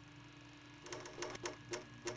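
Faint low hum, then from about a second in a run of sharp clicks, roughly four to five a second.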